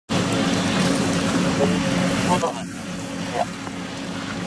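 A steady low machine hum, like an engine running, under a hiss of noise that drops away about two and a half seconds in, with a few short bursts of people's voices.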